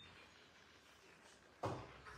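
Quiet room tone, then one sharp knock about three-quarters of the way through, a hard click that dies away quickly.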